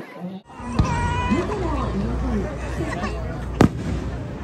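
Aerial firework shells bursting: a bang about a second in and a sharper, louder crack near the end, over the voices of a watching crowd.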